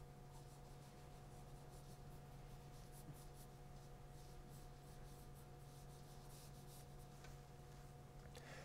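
Pencil scratching on drawing paper in quick, short strokes, very faint.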